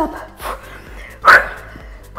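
A woman breathing out hard with the effort of bicycle crunches: a small exhale about half a second in, then a loud, short, forceful one about halfway through, over faint background music.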